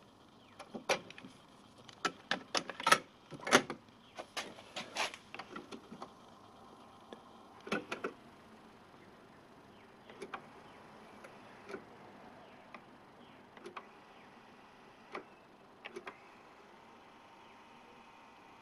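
Clicks and clunks of a cassette being loaded into a Nakamichi BX-2 cassette deck: a quick run of sharp clicks over the first eight seconds or so, then scattered single clicks.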